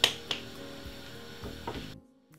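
A single sharp knock of kitchen handling, followed by a couple of lighter clicks, over a faint steady background hum.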